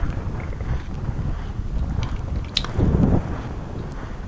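Footsteps crunching on beach pebbles, with wind buffeting the microphone as a low rumble.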